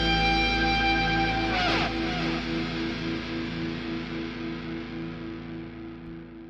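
Background music with a regular pulsing beat of about three a second and a falling sweep about two seconds in, fading out steadily from there.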